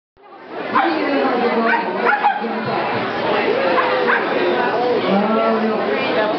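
A Shetland sheepdog barking several times in short barks, over the steady chatter of a crowd.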